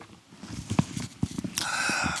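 A few soft, irregular knocks and handling noises, followed by a short hiss near the end.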